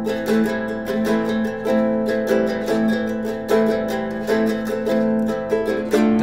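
Guitalele played in a steady rhythm of repeated chord strokes, the chord ringing on between strokes.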